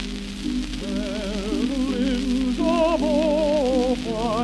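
Music played from a 78 rpm shellac gramophone record: an instrumental passage of held low chords, joined about a second in by a melody line with wide vibrato. The steady hiss and crackle of the old disc's surface runs underneath.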